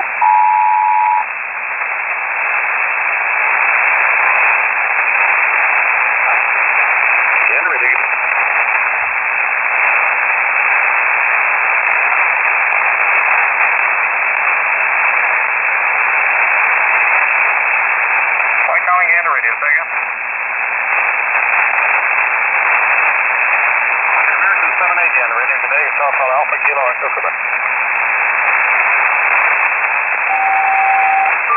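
Single-sideband shortwave receiver hiss on the North Atlantic HF air-traffic channel (3476 kHz USB). It opens with a pair of steady tones sounding together for about a second, the end of a SELCAL selective-calling signal sent to an aircraft. Faint, garbled voice transmissions rise out of the static about two-thirds of the way through and again a little later.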